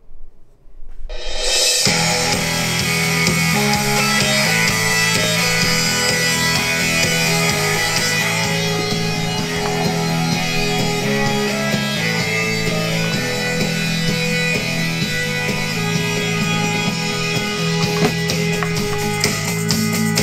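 Rock music with guitar and drums playing loud through the Tajezzo PZ5 smart backpack's built-in dual Bluetooth speakers, starting about two seconds in. It sounds pretty good.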